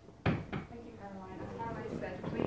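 A sharp knock about a quarter second in and a lighter one soon after, followed by a person's voice.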